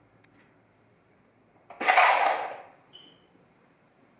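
A single loud, sudden noise about two seconds in that dies away over about a second, followed by a brief faint high-pitched squeak.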